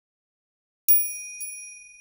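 A small bright bell chime struck about a second in and again half a second later, ringing on and slowly fading; a sound effect marking the break between one story and the next.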